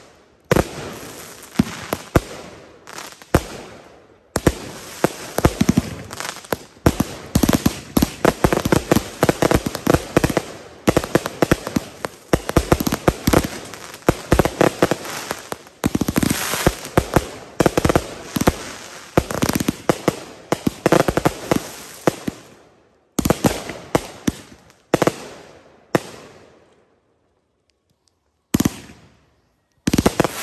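Consumer firework cakes firing from the ground in a rapid, dense barrage of launch thumps, bangs and crackle. It thins out after about 22 seconds, goes quiet for a couple of seconds near the end, then a few more shots go off.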